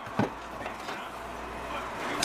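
A single short knock about a quarter second in, as an electric hand mixer is set down on a countertop, followed by faint steady room noise.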